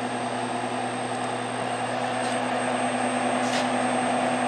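Steady electric machine hum with a faint high-pitched whine from a powered-up tamp-down label applicator and printer, running idle before a label is printed.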